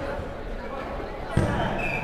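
A dodgeball hitting the hardwood court floor once, about a second and a half in, with echo in the large hall, over the chatter of players. A short squeak, like a sneaker on the wooden floor, follows near the end.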